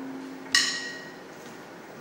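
A pause in a live acoustic band performance. A held low note fades out, and about half a second in a single sharp, bright percussive hit rings out and dies away.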